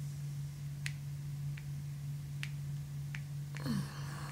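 Four light, sharp clicks, irregularly spaced, from taps on a smartphone screen, over a steady low hum. A short sound falling in pitch comes near the end.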